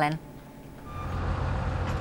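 Building-site background noise fading in about a second in: a low vehicle engine rumble with a short beep at its start, like a reversing alarm.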